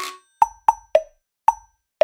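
A run of short, pitched plop sound effects, about five in two seconds at uneven spacing, each dying away quickly, with silence between them.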